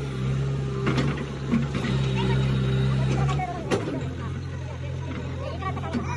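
A JCB 3DX backhoe loader's diesel engine running steadily, its pitch dropping to a lower hum about three and a half seconds in as the revs fall. There are a couple of sharp knocks, and people talk over it.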